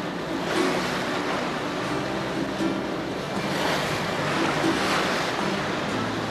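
Sea waves washing, swelling up about half a second in and again near the middle, with soft background music underneath.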